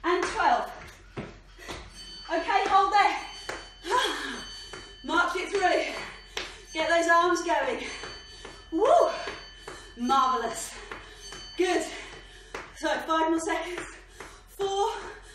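A woman's voice, out of breath during a burpee set: short breathy vocal sounds that fall in pitch, repeating about every one to two seconds.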